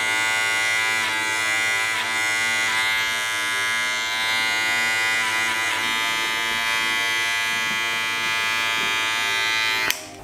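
Electric hair clipper running with a steady buzz as it cuts hair over a comb at the nape of the neck (clipper-over-comb tapering), with a few brief crackles as the blade bites into the hair.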